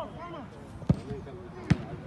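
A football kicked twice, two sharp thuds a little under a second apart, over players' distant shouts.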